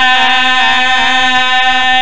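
Several men chanting a noha, a Shia mourning chant, through microphones, holding one long steady note after a wavering line.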